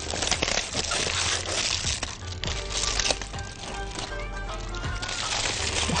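Aluminium foil crinkling and rustling in many small crackles as it is pulled open and lifted off a roast, over background music with held notes.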